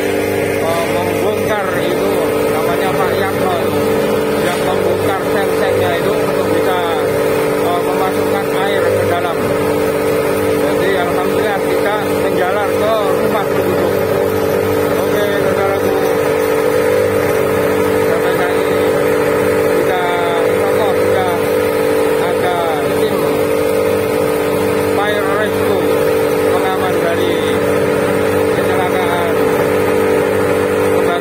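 Fire truck's engine and water pump running steadily at an even speed, with a continuous, unchanging note. Voices can be heard talking underneath.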